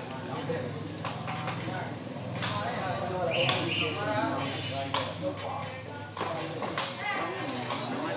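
Sepak takraw ball being kicked back and forth in a rally: about five sharp kicks a second or so apart, over a murmuring crowd.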